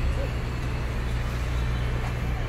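Steady low rumble of street ambience and traffic noise.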